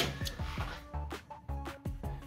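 Background music with a steady low beat and short plucked notes.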